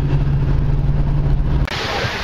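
Car interior driving noise: a steady low engine hum and road rumble. Near the end it cuts off suddenly to an even hiss of wind and surf.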